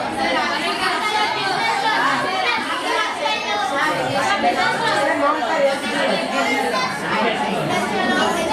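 Many schoolchildren's voices talking over one another: a steady hum of classroom chatter with no single voice standing out.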